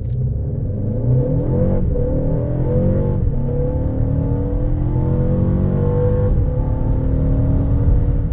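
2024 Mercedes GLB 250's 2.0-litre turbocharged four-cylinder under full-throttle acceleration from a standstill, heard from inside the cabin. Engine pitch climbs steadily and drops back at three upshifts, about 2, 3 and 6 seconds in.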